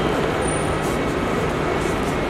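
Steady, dense background rumble of traffic and general bustle at an airport drop-off area, with a faint low hum underneath.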